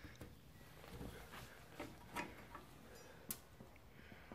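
Faint handling noise from a metal electrical panel enclosure being lifted and turned: a few light clicks and knocks, the sharpest about three seconds in.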